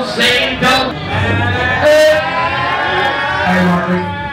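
A male rapper's voice through the PA, drawing out a long wavering vocal near the middle, over the bass of a hip-hop backing track.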